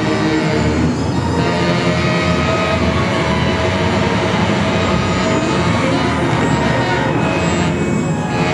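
Live experimental ensemble music: a loud, dense, unbroken mass of many held tones over a low rumble, from reeds, brass, bass and keyboard with electronics, dense enough to sound drone-like and machine-like.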